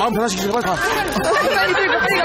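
Several people talking at once in lively, overlapping chatter.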